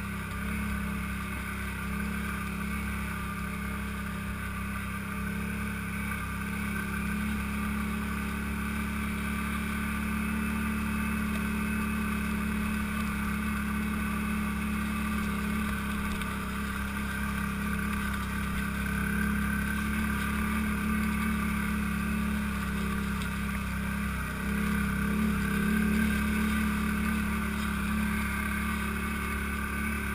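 ATV engine running steadily under way, its drone holding an even pitch, growing a little louder about 25 seconds in.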